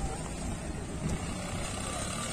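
Outdoor field noise: a steady low rumble with a fainter hiss above it.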